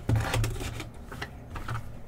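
Hands tearing open the shrink-wrap on a sealed trading-card hobby box: a sharp click at the start, then softer crackles and rustles of the wrapper.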